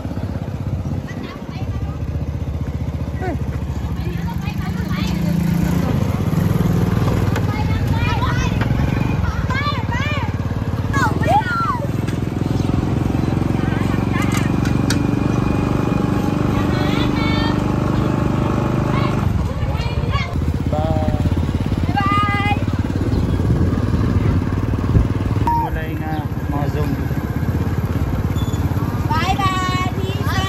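Small motorbike engine running at a steady road speed, with wind on the microphone making a continuous low rumble. Voices call out briefly several times over it.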